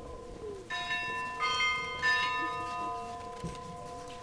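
Church bells ringing: three fresh strikes in quick succession, each bright with high overtones that fade, over the steady hum of earlier strokes still sounding.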